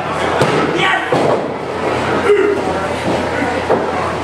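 Crowd chatter and shouting in a large room. A few sharp thuds of wrestlers' bodies on the wrestling ring's mat cut through it.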